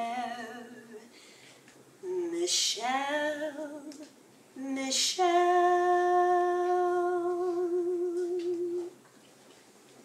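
A woman singing solo and unaccompanied: a few short phrases, then one long held note with vibrato that stops abruptly near the end.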